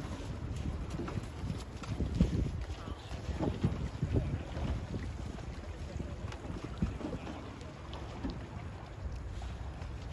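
Wind buffeting the microphone in uneven gusts, loudest around two to four seconds in, with a few faint clicks.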